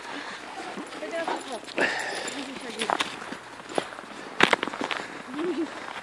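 Footsteps of people and Great Danes walking on snow, irregular and fairly quiet, with faint voices in the background. A single sharp click stands out about four and a half seconds in.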